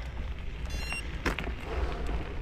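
Low rumble of wind on the microphone while moving along a pine-needle forest trail, with a crunch of movement on the ground about a second in and a brief high chirp just before it.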